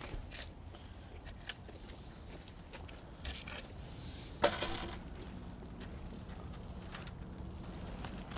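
Hands working loose garden soil around a replanted daylily clump: faint scraping and crumbling with small scattered crackles, and one louder brief rustle about halfway through.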